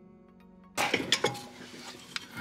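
Faint background music, then about three-quarters of a second in a sudden run of several sharp metallic clinks and clatter as a screwdriver pries against a car's rear brake caliper and bracket, followed by quieter metal handling noise.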